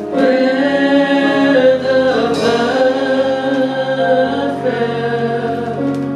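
Live gospel worship song: women's voices singing held notes together into microphones, with keyboard accompaniment.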